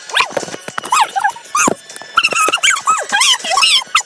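Voices sped up far beyond normal, chattering in a rapid, very high chipmunk-like pitch that keeps rising and falling in short choppy bursts.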